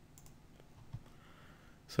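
A few faint computer mouse clicks against quiet room tone.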